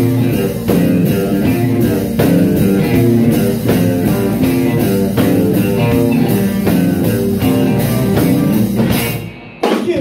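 Live blues-rock band playing without vocals: two electric guitars, electric bass and a drum kit keeping a steady beat. The music drops away near the end, with one last hit just before the end.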